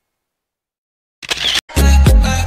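Silence, then a camera shutter click sound effect just past halfway, followed near the end by music with a heavy bass beat.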